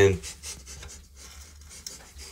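Faint rubbing and scraping of hands and camera handling around the plastic cover of an electric hot water cylinder, close to the microphone, with a small click near the end.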